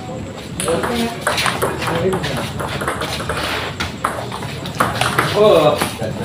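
A doubles table tennis rally: the ball clicks back and forth off the paddles and the table at an uneven pace, with voices in the background and one voice calling out near the end.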